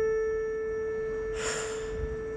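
A held piano note ringing on and slowly fading after the singing stops, with a short breathy exhale about one and a half seconds in.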